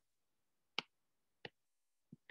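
Two short, sharp computer-mouse clicks, the first a little under a second in and the second about two-thirds of a second later, in near silence.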